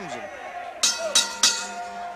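Wrestling ring bell struck three times in quick succession, each strike ringing on: the bell signalling the start of the match.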